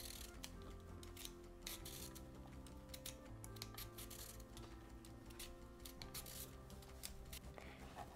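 Vegetable peeler scraping along a raw carrot in quick repeated strokes, faint, over soft background music.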